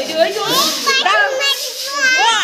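Children's high-pitched voices talking and calling out over one another.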